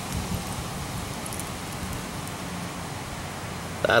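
Steady background noise with a low hum underneath and no distinct event, only a couple of faint tiny clicks about a second in.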